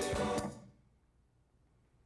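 Konpa dance music with a steady beat, fading out quickly about half a second in, then near silence.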